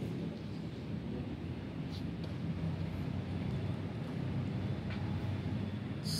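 A wheel loader's diesel engine, out of the machine on a test stand with drum-fed fuel hoses, running steadily at idle while it is checked for any odd sound.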